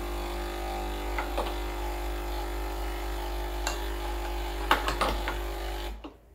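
Breville Oracle BES980 espresso machine's pump running a blank shot, water pouring from the group head to rinse the shower screen and portafilter, with a steady hum and a few light clinks. The pump cuts off suddenly at the very end.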